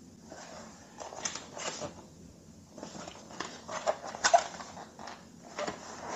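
A cardboard box being handled and turned over in the hands, with faint irregular scrapes and taps of fingers on the cardboard and a few sharper clicks about four seconds in.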